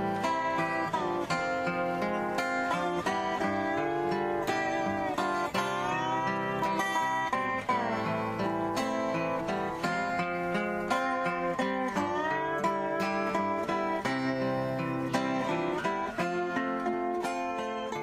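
Background music: a plucked guitar tune with many notes that slide up and down in pitch.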